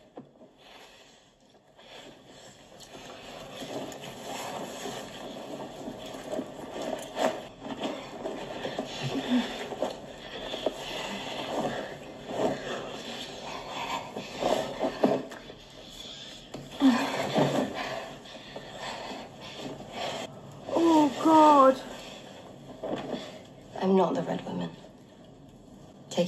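Heavy breathing and rustling with a few short, pitched vocal gasps and exclamations, starting after about two quiet seconds; the clearest gasps come near the end.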